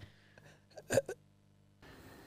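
A mostly quiet pause with one short sound from a person's voice about a second in, followed by a fainter blip.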